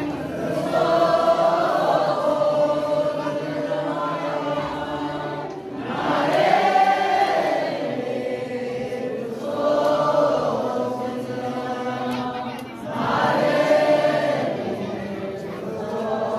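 A crowd of pilgrims singing a chanted prayer together in unison, the many voices swelling louder and falling back in waves about every three to four seconds.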